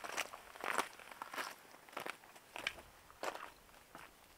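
A hiker's footsteps on a rocky dirt trail, six crunching steps at an even walking pace, about two-thirds of a second apart.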